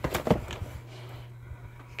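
A few quick knocks and rattles of a cardboard toy box being handled and lifted off a shelf, bunched in the first half-second, over a low steady hum.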